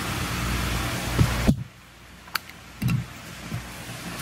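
Steady mechanical background hum and noise that cuts off abruptly about a second and a half in. A few soft knocks and short clicks come from handling something small, likely the seeding tool being got out.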